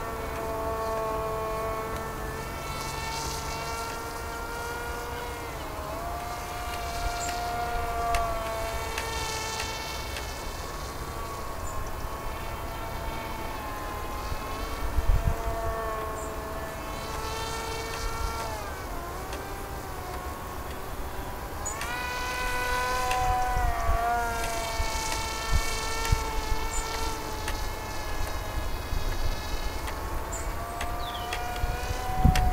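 Model plane's motor and propeller buzzing overhead, a thin whine that keeps drifting up and down in pitch as the throttle changes and the plane passes.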